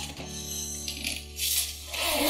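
Zipper on a soft-sided carry-on suitcase being pulled closed in short rasps, over background music with held notes.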